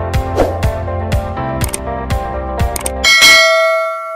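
Intro music with a steady beat, about two beats a second, that stops about three seconds in as a single bright bell ding sounds and rings out. The ding is a notification-bell sound effect for a subscribe animation.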